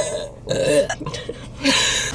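Teenage girls laughing in short, breathy bursts, twice.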